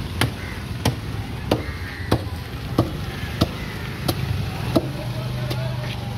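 A knife chopping through fish on a cutting board in steady, evenly spaced strokes, about three every two seconds, over a steady low hum.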